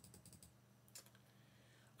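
Faint computer clicks, from a mouse or keyboard: a quick run of several in the first half-second and one more about a second in, in otherwise near silence.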